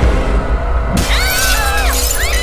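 Horror film soundtrack: a low, rumbling score, then about a second in a sudden crash of shattering glass with high shrill tones sliding over it.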